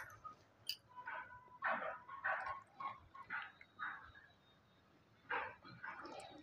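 A dog barking faintly: a string of short barks, broken by a pause of about a second near the end.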